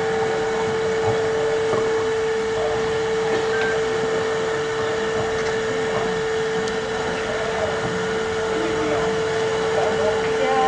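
A steady single-pitched hum held unbroken throughout, over the rushing noise and faint murmur of a crowded hall.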